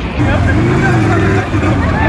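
A person's voice over steady outdoor noise with a low rumble.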